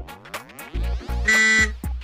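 Comic background music with sound effects: a sweeping glide of tones, then a short, bright buzzing electronic tone past the middle.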